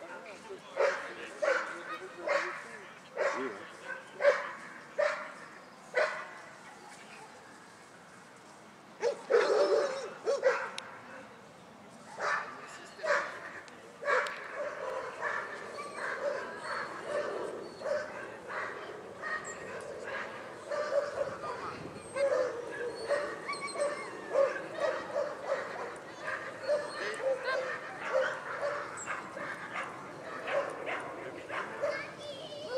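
A dog barking repeatedly. At first the barks come singly, about one a second, then a louder cluster follows, and from about halfway on the barks come in a quicker, denser run.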